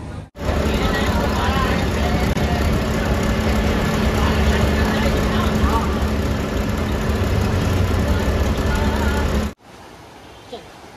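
Steady low rumble of a moving road vehicle, with indistinct voices over it. It starts abruptly and cuts off suddenly near the end.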